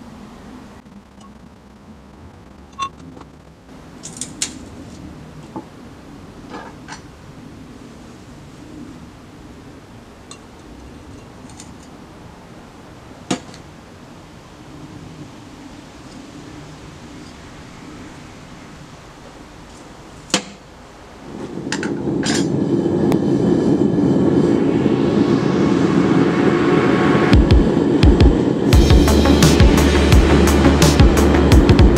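Scattered clinks and a few sharp clanks of tongs and crucible on a small propane melting furnace as powder is loaded into the crucible. About 21 seconds in, background music starts and soon becomes the loudest sound, growing louder near the end.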